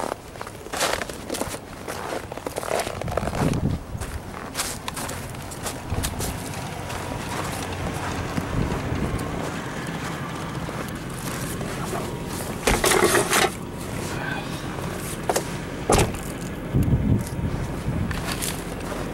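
Footsteps crunching on a thin layer of snow over frozen ground, irregular and close, with a louder crunching scrape about two-thirds of the way through.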